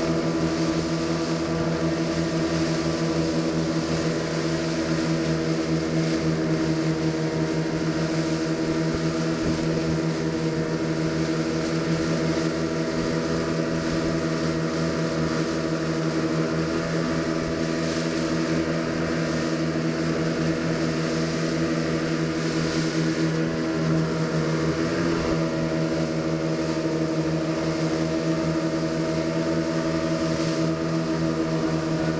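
Motorboat engine running steadily at cruising speed as the boat crosses open sea, with water rushing past the hull and spray from the wake.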